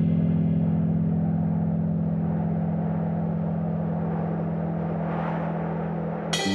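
Ambient instrumental passage of a progressive rock track: a sustained low drone held steady while the higher notes of the previous chord die away. A hissing wash swells behind it toward the end, and the whole slowly gets quieter.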